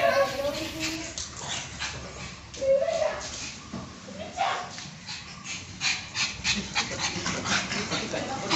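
A pug whimpering and giving short yips, with a run of quick sharp taps in the second half.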